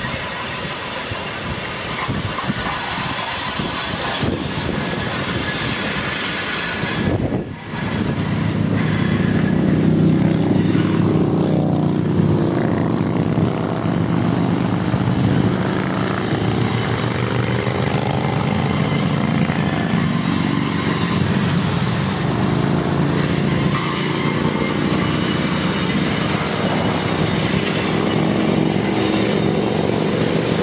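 Freight train's diesel locomotives running with a steady low drone as the train creeps slowly across a steel railway bridge, over a rushing noise of wind and river; the drone comes up stronger about eight seconds in.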